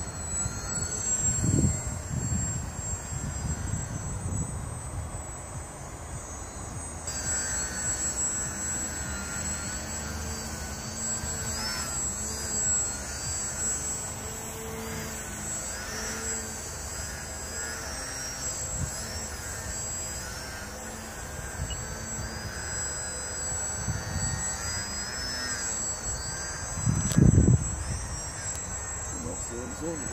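Electric motors and propellers of two small RC aerobatic planes flying overhead, a thin whine that rises and falls in pitch with throttle and passes. Wind buffets the microphone with low rumbles near the start and again about 27 seconds in.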